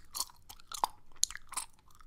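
Gum chewed close to a microphone: a string of irregular wet smacks and clicks of the mouth, a few each second.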